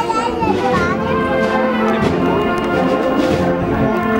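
A brass wind band playing a slow procession march, with held chords, over the chatter of a crowd of people and children.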